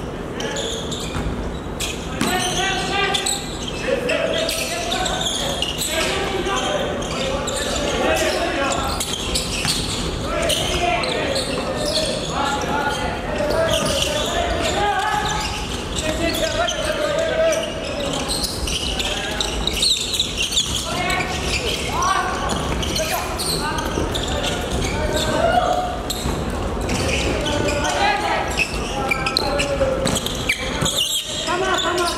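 Basketball practice on a hardwood gym floor: balls bouncing repeatedly, with players calling and shouting over them, echoing in the large hall.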